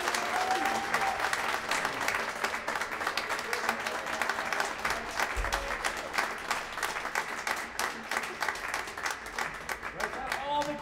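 Audience applauding: many hands clapping steadily, with a few voices in the crowd.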